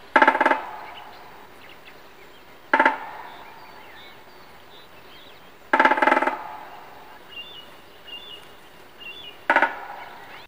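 A great spotted woodpecker drumming on the hollow metal head of a street lamp: four rapid rolls, each about half a second long and each followed by a ringing tail as the hollow lamp housing resonates and amplifies the strikes. The drumming marks its territory and advertises to females. Faint bird chirps sound between the rolls.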